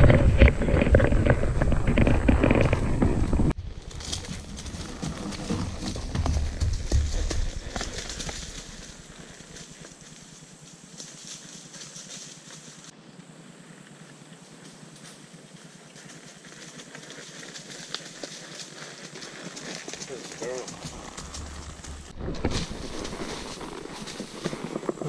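A mule walking under a rider, its hooves on a trail; rough and loud for the first few seconds, then quieter footfalls over woodland leaf litter.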